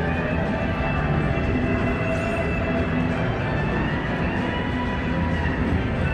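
Casino floor ambience: a steady wash of electronic slot-machine tones and music, with several long held notes overlapping.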